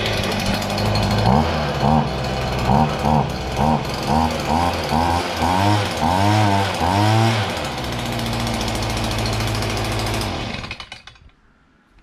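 Stihl BG 50 leaf blower's small two-stroke engine running just after starting. It idles, then its speed rises and falls about twice a second for several seconds, settles back to a steady idle, and is switched off near the end. The carburetor had run dry, and the engine is clearing air from the fuel system.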